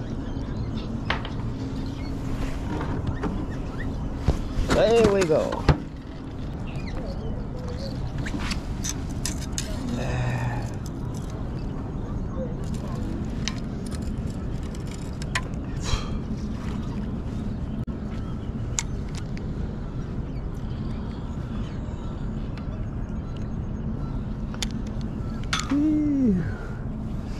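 Steady low outdoor background noise with scattered light clicks, and a brief voice-like call about five seconds in and another at the very end.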